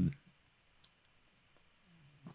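The end of a spoken word at the very start, then near silence with a couple of faint clicks, one a quarter second in and one a little under a second in.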